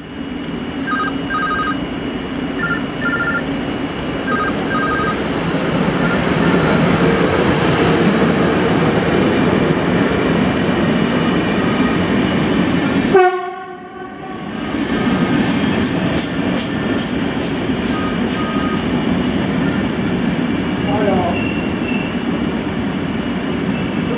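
A PKP Intercity passenger train running past close by at speed: a steady, loud rumble of coaches on the track, with regular clicking of wheels over rail joints about twice a second in the second half. Short repeated double beeps, like a phone ringtone, sound over it in the first five seconds, and about halfway through the sound briefly drops away with a short falling tone.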